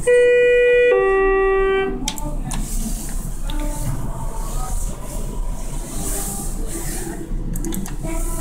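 Schindler 330A elevator chime sounding two notes, a higher one then a lower one, each about a second long. Faint background music follows.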